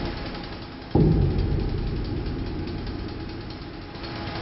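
Engine of concrete-pouring equipment running steadily. It cuts in abruptly about a second in and eases off slightly over the following seconds.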